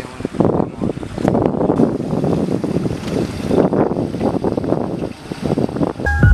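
Wind buffeting the microphone, mixed with lake water sloshing and splashing as hands work in the water at the side of a boat, in loud irregular gusts.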